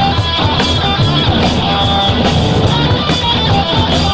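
A band playing rock music live, with guitar to the fore over a steady beat.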